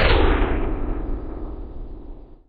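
Logo sting sound effect: a deep boom right at the start that rumbles on and slowly fades.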